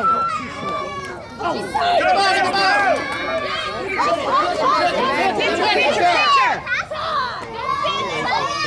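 Many high-pitched voices of players and spectators talking and calling out over one another, a dense babble with no single clear speaker.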